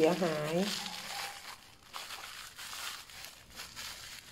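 Plastic bag wrapping around a potted caladium crinkling softly in irregular bursts as it is handled and unwrapped by hand.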